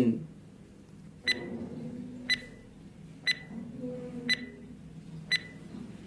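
Five short, high electronic beeps, one a second, from a countdown-timer sound effect marking the time to answer a quiz question, over a faint low background.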